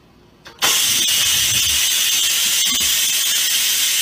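Electric pressure rice cooker venting steam: a loud, steady hiss that starts abruptly about half a second in and holds for several seconds.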